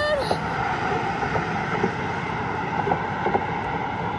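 Steady road traffic noise from cars passing on the highway lanes beside the bridge sidewalk.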